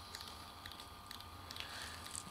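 Faint, scattered clicks from a Fujifilm X-T4 camera's control dial being turned to lengthen the shutter speed, over a low steady hum.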